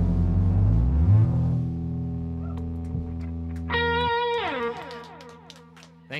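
Electric guitars and bass guitar letting the final chord of a rock song ring out and fade, the low bass notes stopping about four seconds in. Just before that a last electric guitar note is struck, slides down in pitch and dies away, with a few faint clicks near the end.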